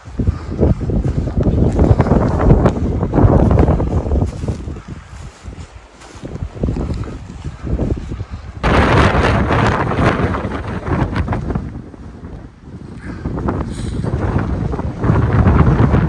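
Strong wind buffeting the microphone in gusts: a loud, low, rough noise that swells for a few seconds, dies back, and swells again, three surges in all.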